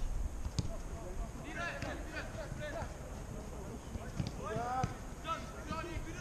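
Footballers shouting short calls to each other across an outdoor pitch during play, with a single sharp knock of a ball being kicked about half a second in.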